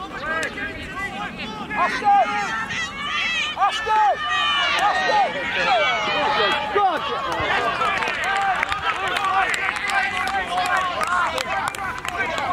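Many voices of sideline spectators and players shouting and calling over one another, growing louder over the first few seconds and staying busy.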